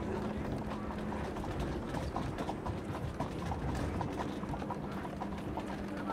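Horses' hooves clip-clopping on a hard street, many quick irregular hoofbeats overlapping, over a steady bed of street noise with a faint low hum.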